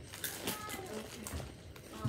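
A few short, sharp crunches of a Takis rolled tortilla chip being bitten and chewed, with a faint voice under them.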